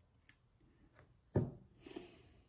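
Faint rubbing and shifting of hands on a wooden tabletop, with a few light clicks and a brief rustle near the end.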